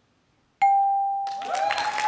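Game-show scoreboard points-reveal ding: about half a second in, a single bright electronic chime sounds and rings on, the signal that the answer scored points on the board. Studio audience applause swells up under it in the second half.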